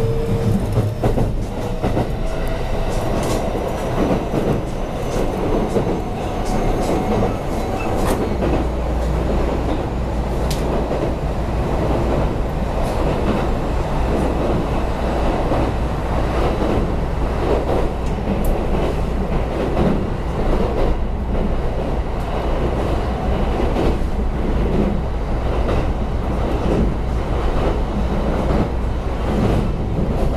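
Onboard running noise of a Kintetsu 5820 series electric train: the Mitsubishi IGBT VVVF inverter and traction motors whine, rising in pitch over the first few seconds as the train accelerates. Wheels click over rail joints throughout, and a deeper rumble sets in about eight seconds in, while the train crosses a river bridge.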